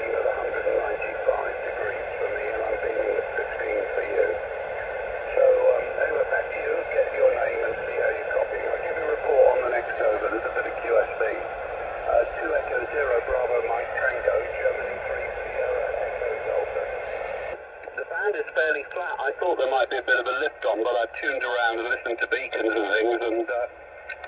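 A man's voice received over 2 m SSB from the Yaesu FT-817's speaker: thin, narrow-band, hissy speech that is hard to make out. About two-thirds of the way in the background noise drops away abruptly and the voice carries on more choppily.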